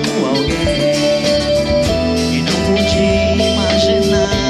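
Live pop-rock band playing: strummed acoustic guitar with electric guitar and drums, under a male lead vocal.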